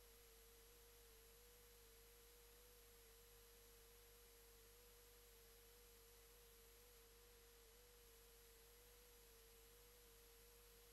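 Near silence with a faint, steady pure tone at a single mid pitch that wavers slightly, over a faint hiss.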